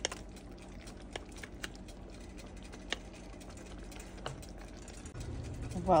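Cooked bowtie pasta being tipped from a pot into a pan of cream sauce: a few scattered light clicks and taps over a low steady hum.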